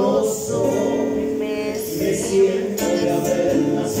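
Live trio music: male voices singing long held notes in harmony over strummed acoustic guitars, with congas played by hand.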